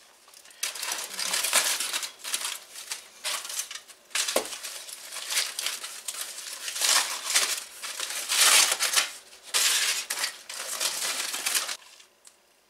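Aluminium foil crinkling and crumpling in irregular bursts as a foil-wrapped package is pulled open by hand, with a single thump about four seconds in.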